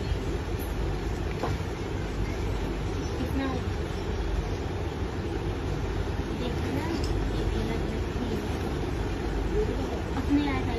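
Steady low background rumble like distant traffic or machinery, with faint voices talking in the distance.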